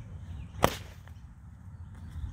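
A bullwhip cracking once at the end of an overhead swing: a single sharp crack a little over half a second in.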